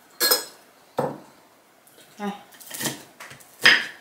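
Chopsticks and a spoon knocking and scraping on ceramic plates and bowls while food is served at the table, as a few separate clinks, the loudest near the end.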